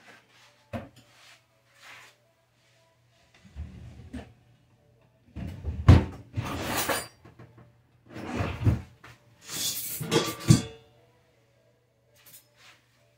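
Plates and utensils clattering and knocking as someone rummages through a dish drying rack by the sink, in irregular bursts, with the loudest clanks about six and ten seconds in.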